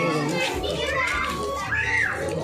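Children's voices and chatter, some high and rising and falling in pitch, with music playing in the background.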